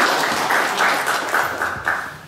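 Audience applauding, the applause fading away near the end.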